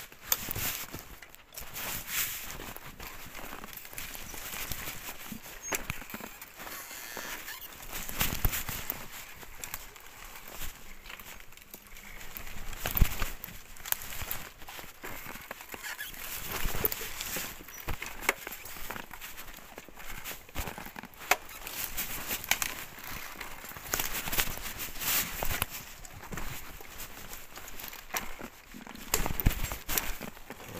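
ICE Adventure recumbent trike riding over a rough dirt and leaf-litter trail: tyre rolling noise with frequent irregular rattles and knocks from the frame and chain as it jolts over bumps.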